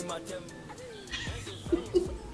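Background music stops, followed by a few short, whinny-like vocal sounds that rise and fall in pitch, the last two near the end.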